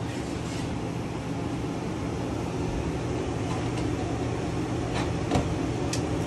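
Steady hum of an RV rooftop air conditioner running, with a couple of light knocks about five seconds in.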